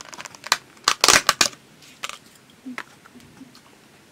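Close-up crunching and crackling from eating pickled chicken radish out of a small plastic cup with chopsticks. A cluster of loud, crisp bursts comes about a second in, followed by a few lighter clicks.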